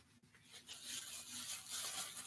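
Faint, uneven rubbing and rustling of something small being handled between the hands, starting about half a second in after a short near-silence.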